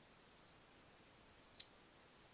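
A single crisp click about one and a half seconds in, over a faint steady hiss: a European hedgehog crunching a dry kitten biscuit.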